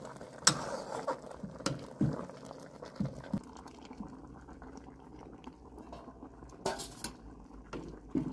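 Metal ladle clinking and scraping against a stainless-steel cooking pot as boiled beef tripe is lifted out, over the low bubbling of the boiling water. There are several sharp clinks, the loudest clatter about three-quarters of the way through.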